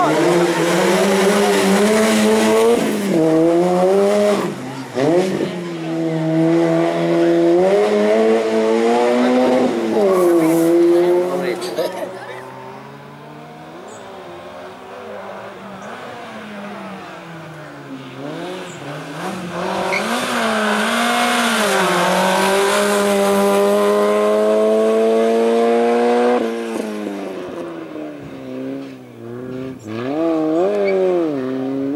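Citroën Saxo race car's engine revving hard, its pitch climbing and dropping again and again as the driver accelerates and lifts between cones. The engine fades to a more distant, quieter note for several seconds about twelve seconds in. It then builds to a long rising rev before dropping away a few seconds before the end.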